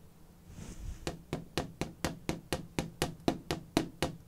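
Footstep sound effects: quick, even steps at about four a second, starting about a second in, sharp knocks like shoes on a hard floor.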